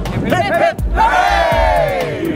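A small group of people cheering and whooping together. A short yell comes just before half a second, then one long shout swells up about halfway through and falls away near the end.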